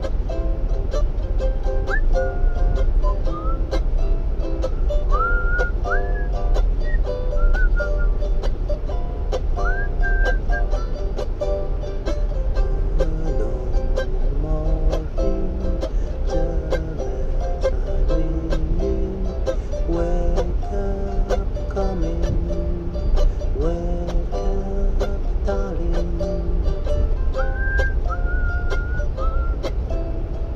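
A ukulele picked in a slow lullaby, with a whistled melody above it that slides up into its notes, over a steady low rumble like a moving train.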